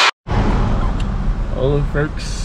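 Steady low rumble of a car heard from inside the cabin, starting a moment after a brief silence, with a short voice sound near the end.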